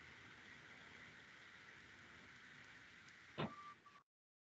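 Near silence: a faint steady hiss of room tone over the call, broken about three and a half seconds in by one short click and a brief high tone.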